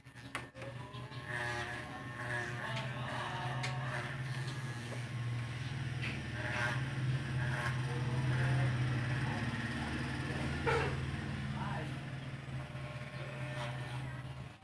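Corded electric hair clipper with a guide comb, buzzing with a steady low hum as it cuts hair. A single sharp click about ten seconds in.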